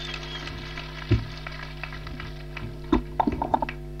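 Steady hum from a public-address microphone channel with faint crackling. There is one low thump about a second in and a cluster of thumps near the end, the sound of the microphone on its stand being handled.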